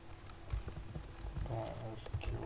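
Computer keyboard typing: irregular key strikes with dull thumps as code is entered, and a short bit of voice near the end.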